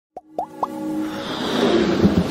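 Intro sound effects: three quick rising blips, then a swelling riser that grows steadily louder.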